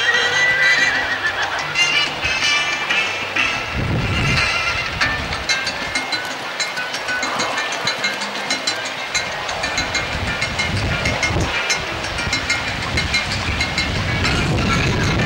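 Background music over a show-jumping horse cantering on grass, with repeated hoofbeats and a few heavier low thuds.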